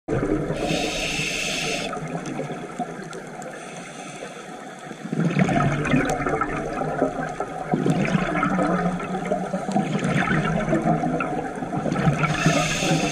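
Scuba diver breathing on a regulator underwater: a hissing inhale about a second in, then bubbling, crackling exhalation from about five seconds on.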